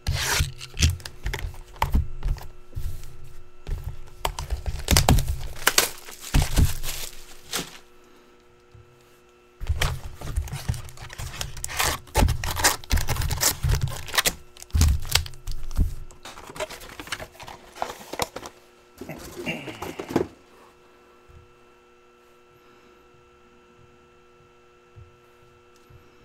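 Plastic wrap torn and crinkled and cardboard handled as a trading-card hobby box is unwrapped and opened, with foil packs pulled out and set down in stacks with light knocks on the table. The rustling pauses briefly near the middle and stops a few seconds before the end, leaving a low steady hum.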